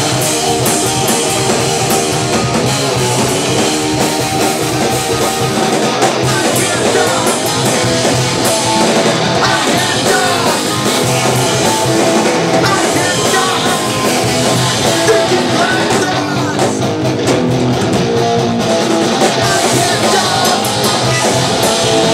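Punk rock band playing live, loud and without a break: electric guitars and drums, with a singer's vocals into the microphone.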